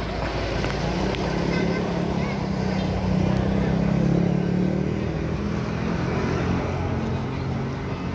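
Intercity bus's diesel engine running close by as the bus moves slowly past and pulls away: a steady low hum that swells about three seconds in and eases toward the end.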